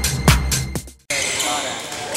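Electronic dance music with a steady beat fades out about a second in. It gives way to the echoing sound of a basketball game in a gym, with sneakers squeaking on the hardwood floor.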